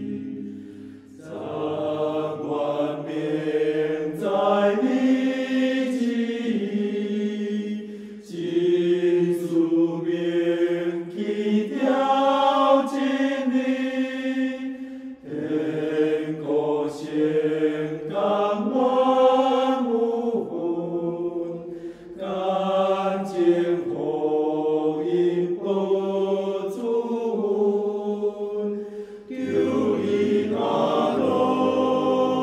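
A choir singing a slow hymn in Taiwanese, in long phrases with a short breath about every seven seconds.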